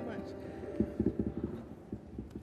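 Orchestral music fading out, then a run of irregular light knocks and taps, like handling noise at a podium.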